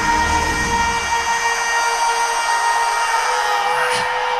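Live rock band music: the drums and bass drop out and a held chord of steady tones rings on.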